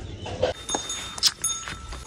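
Small metal bells on a decorative cattle halter and rope jingling lightly, with a few sharp clicks and taps between short ringing notes.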